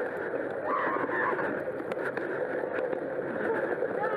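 Steady rolling noise of a Super73 S2 e-bike's fat tyres over pavers and wooden boardwalk, mixed with wind on the microphone. The bike is being pedalled with its motor switched off, so there is no motor whine.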